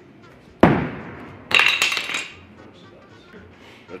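A throwing axe hits the wooden target board with a loud, sharp thunk about half a second in, followed about a second later by a clinking, ringing metal impact.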